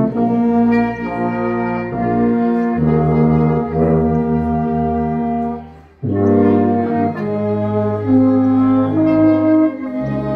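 Small mixed ensemble of violins, woodwind, trombone, euphonium and tuba playing slow, sustained chords, the brass leading. About six seconds in the music breaks off briefly and then a new phrase begins.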